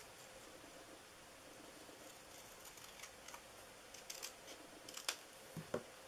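Faint snips of small scissors trimming a strip of black cardstock: a few quiet clicks in the second half, the sharpest about five seconds in, with a soft tap near the end.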